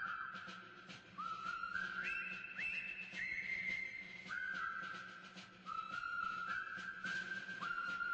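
A slow whistled tune played as music: long held notes, each sliding up into its pitch.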